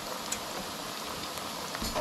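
Battered cusk nuggets deep-frying in a pot of hot oil: a steady sizzle.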